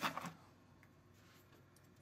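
The tail end of a spoken word, then near silence: quiet room tone.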